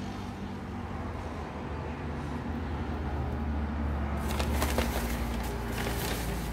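A low, steady rumble throughout. From about four seconds in, the crackle of white packing paper being rustled and moved in a cardboard box joins it.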